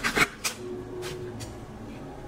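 Cards being handled on a table: a few short rustles and flicks of stiff card in the first half second, the loudest about a quarter second in, then only faint handling sounds.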